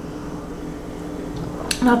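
A steady low hum over room background noise, with a sharp click near the end just before speech starts.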